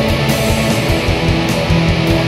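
Atmospheric black metal: dense distorted electric guitars holding sustained chords over steady, fast drumming with repeated cymbal hits.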